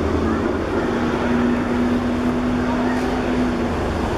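Outdoor sports-ground ambience: a steady low rumble with shouting voices. A flat, steady tone holds from about a second in until just before the end.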